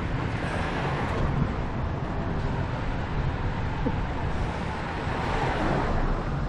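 Steady wind rumble on a bicycle-mounted camera microphone, with tyre and road noise from riding a loaded touring bike on asphalt.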